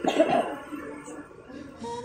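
A person coughs once, briefly, near the start, followed by faint background noise.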